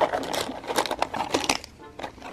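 Fingers flicking through a box of individually wrapped ovulation and pregnancy test strip packets: a quick, irregular run of crinkly rustles and clicks.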